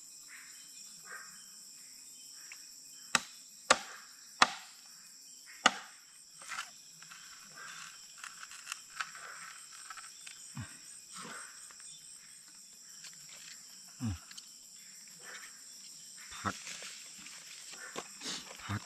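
A machete striking bamboo: four sharp chops about three to six seconds in, then lighter knocks and handling of bamboo and leaves. Night insects chirr steadily and high-pitched throughout.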